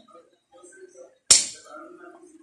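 A metal fork cuts down through a slice of cake and strikes the glass plate beneath it once, giving a single sharp clink about a second in that rings away briefly.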